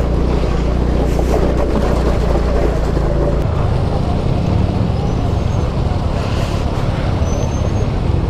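An engine running steadily, a low rumble under a wash of noise; the deepest part of the rumble drops away about halfway through.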